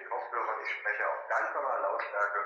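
A voice coming over a phone call, thin and band-limited, playing from a smartphone. It is a test call picked up by the microphone of cheap black TWS earbuds, and it comes through loud and clearly understandable.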